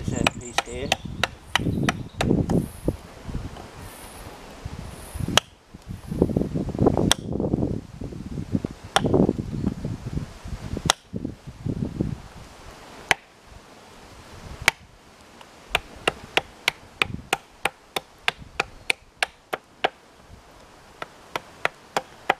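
Hatchet chopping a wet-wood spoon blank on a log chopping block: a string of sharp knocks that come faster near the end. Wind rumbles on the microphone through the first half.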